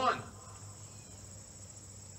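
Steady, faint, high-pitched drone of insects, with a low steady hum underneath.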